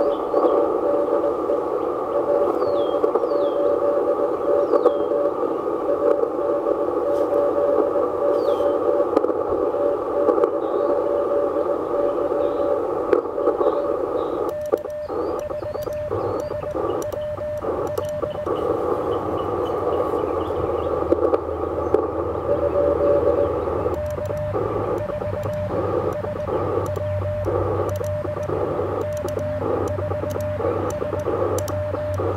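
Mission RGO One transceiver's receiver hiss carrying a steady CW tone. About halfway through, and again from the last few seconds onward, it breaks into Morse code keyed on a Begali Traveler paddle, heard as the rig's beeping sidetone over the band noise.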